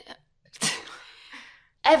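A sudden, sharp breath noise from a woman close to the microphone, trailing off over about a second.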